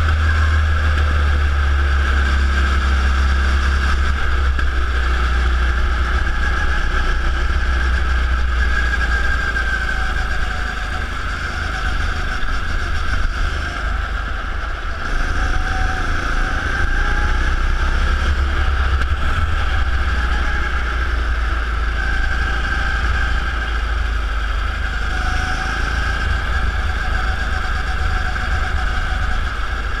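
Go-kart engine running at racing speed, heard from the kart itself, with a heavy low rumble underneath. The engine note eases for a few seconds around the middle, then picks up again.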